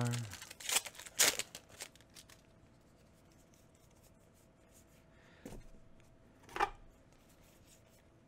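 A foil booster pack wrapper torn open in a few short crinkling rips during the first two seconds. Later come a faint rustle of trading cards being handled and one sharp tick.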